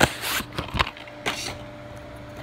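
Handling noise: a sharp click, then a brief rustling scrape, a couple more clicks and another short rustle, as plastic DVD cases, slipcovers or the recording phone are handled and rubbed.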